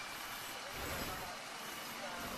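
Faint street ambience: a steady hiss of distant traffic with background voices.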